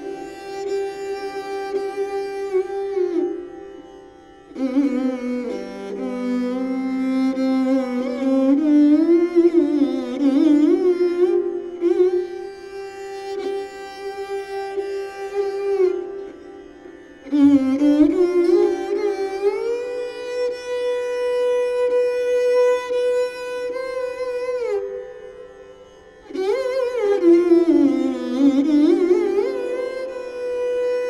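Taus (mayuri veena), a bowed, fretted Indian string instrument, playing a slow solo passage in Raag Bageshri. Long bowed notes slide between pitches, and the phrases swell and then fade out in several short pauses.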